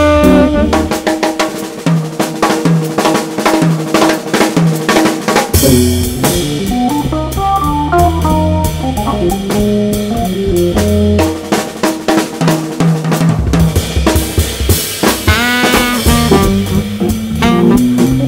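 Jazz combo recording in a drum-kit stretch: rapid snare hits and rimshots with low bass notes underneath, the saxophone line coming back in near the end.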